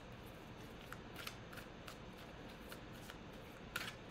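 A deck of tarot cards being shuffled overhand: a faint run of soft, irregular card flicks, with one louder snap near the end.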